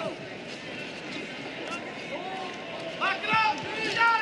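Indistinct background voices with a steady room hum, and one voice calling out loudly and high-pitched about three seconds in.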